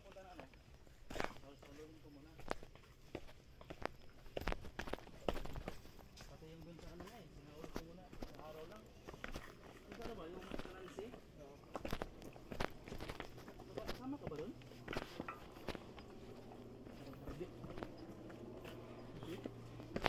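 Irregular footsteps of several hikers stepping down a rocky, leaf-strewn dirt trail, each step a short scuff or knock, with voices talking faintly in the background.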